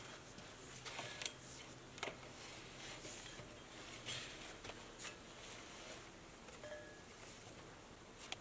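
Faint, scattered clicks and scrapes of black poly water pipe rubbing against the rim of a steel well casing as it is fed down the well by hand.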